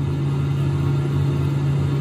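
Steady low rumble with a hum underneath, the ambient background noise of the recorded statement during a pause in speech.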